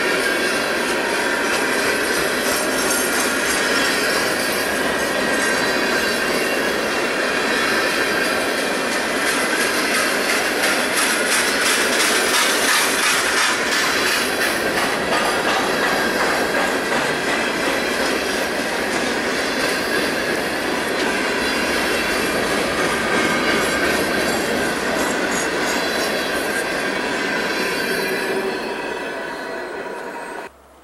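Empty steel hopper cars of a freight train rolling past: a steady rumble of wheels on rail with thin wheel squeal and rapid clicking over the rail joints. It fades over the last couple of seconds as the end of the train goes by.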